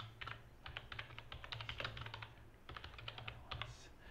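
Typing on a computer keyboard: a fast run of key clicks, with a brief pause about two and a half seconds in.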